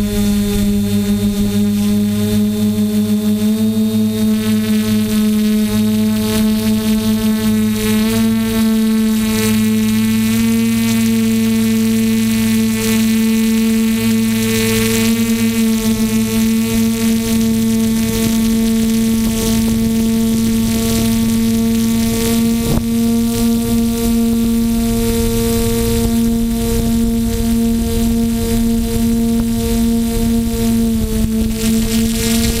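Drone motors and propellers heard close up from the onboard camera: a loud, steady buzzing hum whose pitch steps up slightly a few times.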